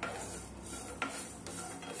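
Wooden spatula stirring cashews and small seeds in a stone-coated nonstick frying pan, with faint scraping as the spatula moves through them and one sharp click about a second in.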